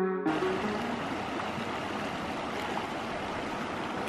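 Guitar music stops a moment in. A shallow creek then runs steadily over rocks.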